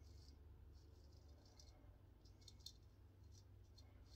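Faint, short scrapes of a 7/8 full-hollow straight razor cutting through lathered beard stubble on the neck, a handful of separate strokes.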